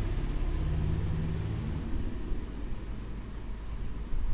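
A low background rumble with a brief hum in its first second and a half, then easing slightly.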